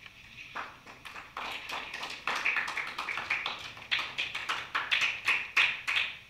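Small audience clapping. The clapping starts about half a second in, grows over the next second, then keeps up.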